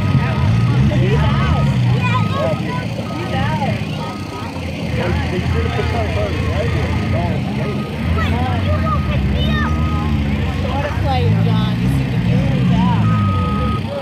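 Car engines revving up and down on a grass field, with a vehicle's reversing alarm beeping about once a second, off and on, and background voices.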